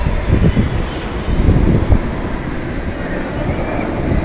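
Open aerial gondola car running along its cable, heard as an unsteady low rumble, mixed with wind buffeting the phone's microphone.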